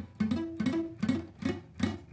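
Acoustic guitar strings picked one at a time through an A minor chord shape, about six plucks with notes that die away quickly. This is the muted, dead-note sound a beginner gets from fretting with flat fingers instead of the fingertips.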